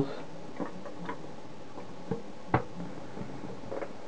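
Handling sounds from the plastic case of a Plessey PDRM 82 survey meter being turned in the hands: a few faint clicks and one sharp click about two and a half seconds in, over low room hiss.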